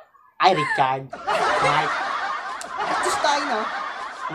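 A woman laughing with her hand over her mouth: a short burst of pulsing giggles about half a second in, then breathy, stifled laughter.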